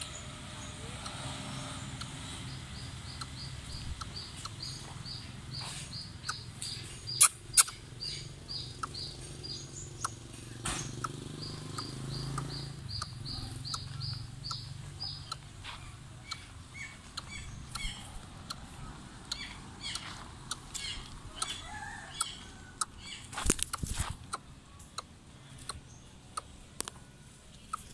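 A bird repeating a short, high chirping note about three times a second, in two runs of several seconds each, with a few lower notes later. Sharp knocks and handling noise come in between, the loudest a pair of clicks about seven seconds in.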